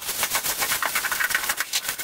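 Black plastic stretch wrap crinkling and tearing as it is pulled off a package, a rapid irregular crackle.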